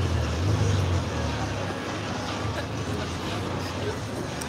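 Street traffic noise with a low engine rumble, strongest in the first second and then easing off.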